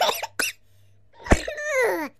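A person's non-speech vocal sounds: a short pitched burst at the start, then, after a brief quiet gap, a sharp onset and a voiced sound sliding down in pitch.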